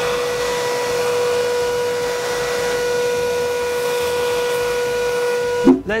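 Vacuum cleaner running steadily with a constant whine as its hose nozzle sucks up sawdust from a mini wood lathe. It is switched off with a thump near the end.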